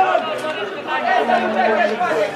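Men's voices calling out and chattering at a football match, several overlapping and indistinct, with one call held for a moment in the second half.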